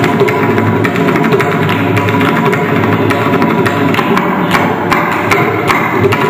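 Mridangam playing rapid, unbroken strokes in a Carnatic percussion ensemble, over a steady drone.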